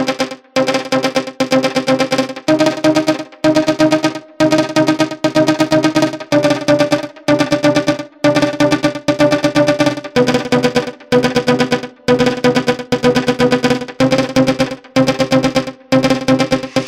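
Melodic techno track: a synthesizer chord riff played as fast chopped stabs, with no deep bass. The chord moves up a few seconds in and drops back about ten seconds in.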